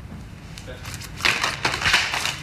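A short burst of rough scraping and crunching clatter, starting about a second in and running on to the end, loudest near the end.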